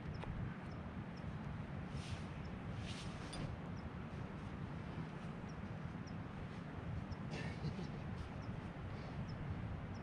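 Wind buffeting the microphone: an uneven low rumble, with a few brief scuffs about two, three and seven and a half seconds in.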